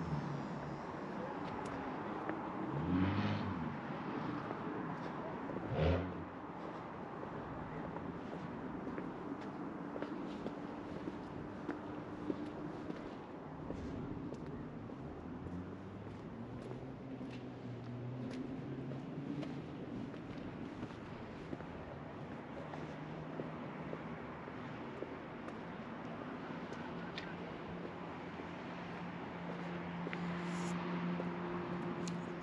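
Town traffic heard from a hilltop: a steady hum of cars and engines below, with two louder vehicle passes whose pitch rises and falls about three and six seconds in.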